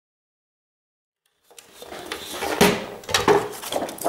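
Olympia lever-arm guillotine paper trimmer cutting a strip off a sheet of scrapbook paper: a few sharp clunks and scrapes of the arm and blade and paper handling, starting about a second and a half in after dead silence.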